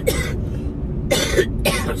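A man coughing into his fist, three coughs, with the steady low rumble of the moving truck's cab underneath.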